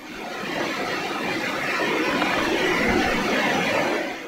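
Floodwater rushing across a flooded street: a steady, even wash of water noise that swells in at the start and fades out near the end.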